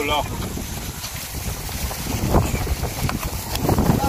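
Wind buffeting the microphone, a steady low rumble, with a brief voice at the very start.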